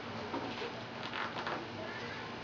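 Handling noise from hands working steel bar clamps on a wooden jig: a few short scrapes and clicks over a steady background hiss.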